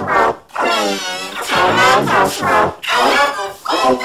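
Yelling and wailing from a meltdown, run through the 'G Major' effect: several pitch-shifted copies of the voice layered into a musical chord. About six cries, each under a second, follow one another with short breaks.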